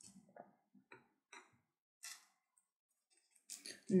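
Faint, irregular taps and soft scrapes of a small paintbrush dabbing wet decoration mousse onto paper, about half a dozen short touches over a few seconds.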